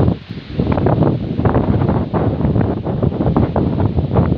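Wind buffeting the microphone: a loud, gusty rumble that rises and falls irregularly.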